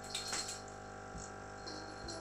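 Faint steady hum with a few light ticks and clicks in the first half-second.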